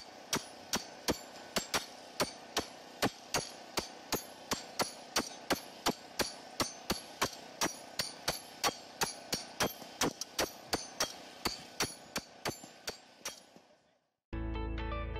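Sledgehammers striking a steel stake in fast rotation, about three clanging blows a second, the stake being driven into the ground. The blows stop shortly before the end.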